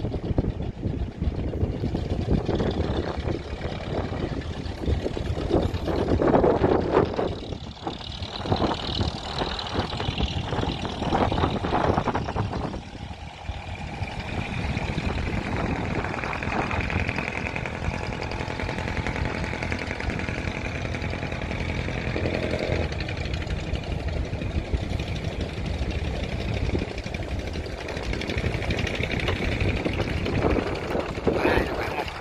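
Fishing-boat engines running as the boats move through the harbour: a steady, rapid chugging. An engine drone stands out more strongly for several seconds in the middle.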